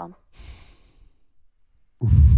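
A person sighing: one breathy exhale lasting under a second, just after the last word.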